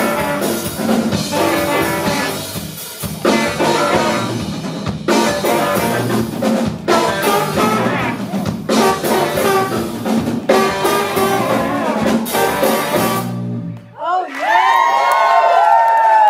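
A live blues-rock band with electric guitar, tenor sax, trombone, keys, bass and drums plays the closing bars of a song, with sharp drum hits every couple of seconds. The music cuts off suddenly about two seconds before the end and gives way to whoops and calls from the audience.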